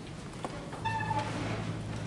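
Wooden church pews creaking as people sit down. A faint click comes first, then a short, high, steady-pitched squeak a little under a second in.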